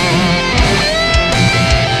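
Distorted electric guitar, a Valley Arts Custom Pro USA played through a Kemper profile of a Mesa Boogie Triple Crown TC-50 amp, playing a rock lead phrase over a drum backing: a wavering note at first, then a note bent up and held from about halfway.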